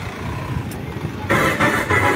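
Motorcycle engine passing close on a street, growing louder just over a second in, over a steady hum of street noise.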